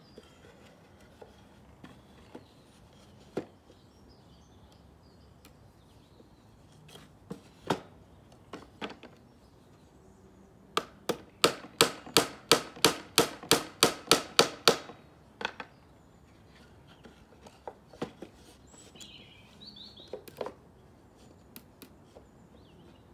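Small hammer nailing together a softwood bird box. It gives scattered single taps, then a quick run of about fifteen blows in four seconds about halfway through, then a few more taps.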